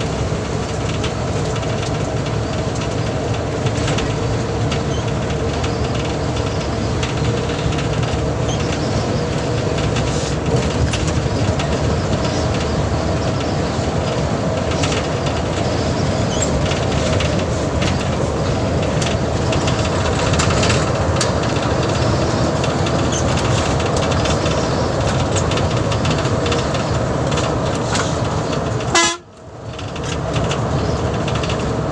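Cabin noise of a BRTC bus cruising on the highway: a steady drone of engine and tyre noise with scattered rattles and clicks from the bodywork. The sound drops away abruptly for about a second near the end.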